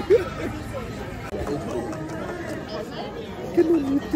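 People laughing and talking at close range, over a steady background chatter of other diners. The loudest laughs come at the start and again near the end.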